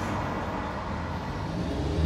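Heavy truck's diesel engine rumbling as the truck pulls out. Its low engine note grows louder near the end.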